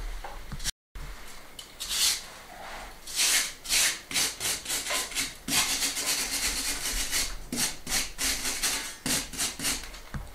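Hand wire brush scrubbing powdery residue off a rough stone wall in scratchy strokes, a few slow ones at first, then quicker, about three a second.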